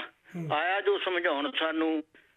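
Speech: a voice reciting Punjabi verse.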